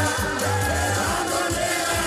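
Kikuyu gospel (kigooco) music with singing over a steady bass line.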